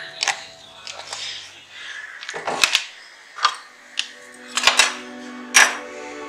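About eight sharp clicks and knocks at irregular intervals, over faint background music.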